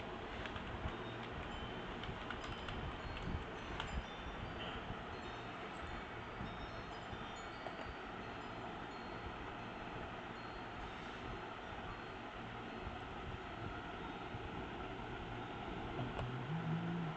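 Steady background hiss of a quiet room. A few sharp keyboard keystrokes and clicks come in the first four seconds, with faint short high tones scattered through the middle.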